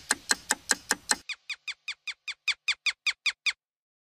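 Cartoon clock ticking fast, about five ticks a second. After about a second it gives way to a run of short falling squeaks at the same pace, which stops about three and a half seconds in.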